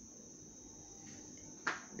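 A faint, steady, high-pitched continuous tone over quiet room noise. Near the end comes a short sharp breath, then a voice begins.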